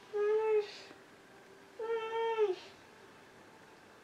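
A cat meowing twice: two drawn-out calls about a second and a half apart, the second longer and dropping in pitch as it ends.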